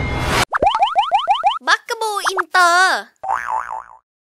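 Cartoon-style logo sting: the tail of a music cue gives way about half a second in to a quick run of about seven rising boing chirps, then a squeaky, wavering cartoon voice, ending in a short warbling tone.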